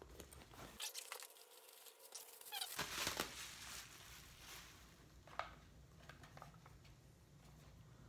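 Plastic bag crinkling and rustling in faint, irregular bursts as a scuba mask is unwrapped from it, loudest about three seconds in.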